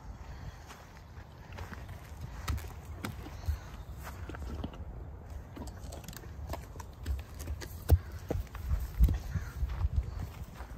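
Footsteps on short grass and a horse grazing close by: irregular soft crunches and thuds, with a louder knock about eight seconds in.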